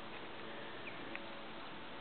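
Faint, steady background hiss of outdoor ambience, with a brief faint chirp and a soft tick about a second in.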